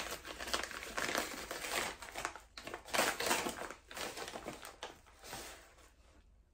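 A paper bag crinkling and rustling as it is pulled open by hand, in irregular crackles that die away near the end.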